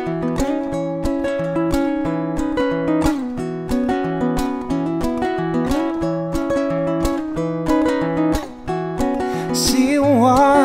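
Solo nylon-string classical guitar playing an instrumental passage: fingerpicked chords over a steady beat of percussive slaps on the strings.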